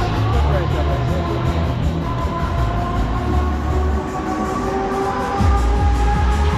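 Pendulum ride in motion heard from on board: a continuous mechanical whine whose pitch slowly rises, over a heavy low rumble, with funfair music underneath.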